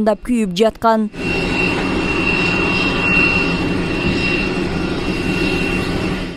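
Steady jet airliner engine noise with a thin, high whine held throughout, starting about a second in.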